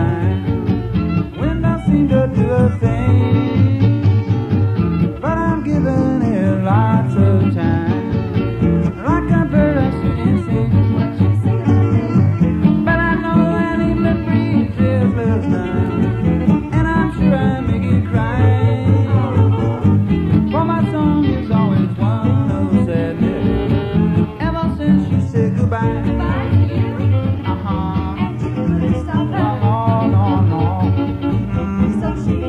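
Live swing band playing steadily, a full ensemble with a melody line that slides and bends above the accompaniment.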